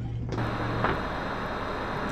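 Steady hiss over a low hum, picked up by the HDZero goggles' built-in microphone with the goggles' cooling fans running. The sound turns brighter and fuller about a third of a second in, and there is one faint tick just before the midpoint.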